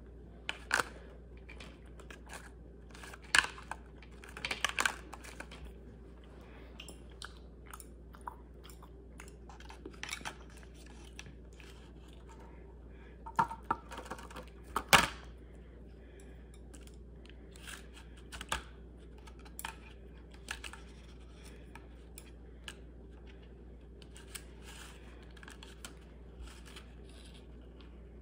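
Thin plastic candy tray and container being handled and prodded with chopsticks: scattered sharp clicks, taps and crinkles, over a faint low hum. The loudest clusters come about a sixth of the way in and about halfway through.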